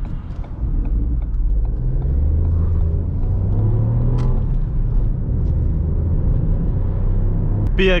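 Ford Fiesta 1.0 EcoBoost three-cylinder turbo petrol engine heard from inside the cabin as the car accelerates: its drone rises in pitch over a couple of seconds, then holds steady at cruise over road rumble. A man's voice starts just at the end.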